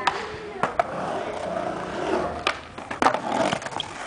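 Skateboard wheels rolling on a concrete mini ramp, broken by several sharp clacks of the board striking the ramp, the loudest about three seconds in as the skater bails and the board clatters away loose.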